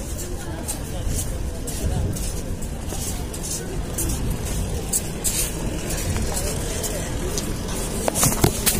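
Railway platform ambience beside a passenger train: a steady low rumble with indistinct voices, plus scattered clicks and rustles of handling noise on the microphone as it is carried into the coach.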